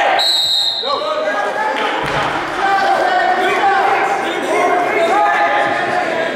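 A high, steady whistle-like signal tone, lasting under a second just after the start, stopping the wrestling action. Spectators and coaches shout and call out across the gym throughout, with echoing voices overlapping.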